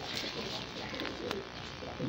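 Domestic pigeons cooing softly in the background, with one faint click a little over a second in.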